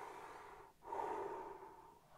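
A man taking a slow, calming deep breath close to the microphone, heard as two long breaths of under a second each, the second one louder.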